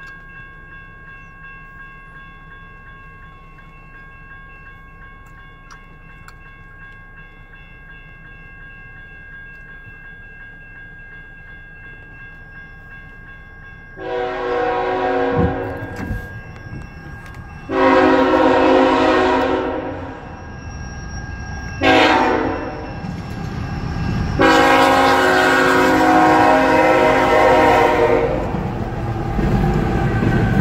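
Canadian National freight locomotive's horn sounding the grade-crossing pattern, starting about halfway in: two long blasts, a short one, then a long one. Near the end the low rumble of the train reaching the crossing builds up, heard from inside a car.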